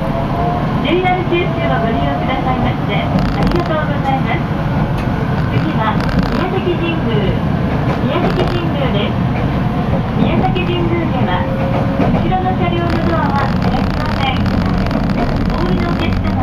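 Steady running noise of a local passenger train heard from inside the car, with indistinct voices of other passengers talking over it.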